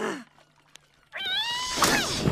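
A cartoon character's wordless vocal cries: a short arching cry ending at the start, then after a pause a longer squeal rising slightly in pitch about a second in, running into a noisy rush near the end.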